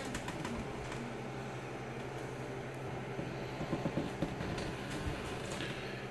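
A steady low hum in the room, with a few faint small ticks.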